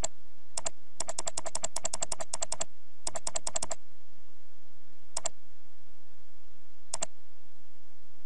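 Computer mouse clicks, each a quick double tick of press and release. A couple of single clicks come first, then a fast run of about a dozen at roughly eight a second, a shorter run of about five, and two lone clicks later on, all over a faint low hum.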